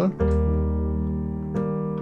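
Electronic keyboard with a piano sound playing an E-flat major chord, the Eb of an Eb–F–G walk-up to C/D. It is struck just after the start and held, then a fresh attack comes about a second and a half in.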